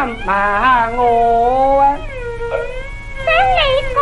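Cantonese opera singing from a 1936 78 rpm record: a high voice holding long notes that slide up and down, over a steady low hum from the old recording.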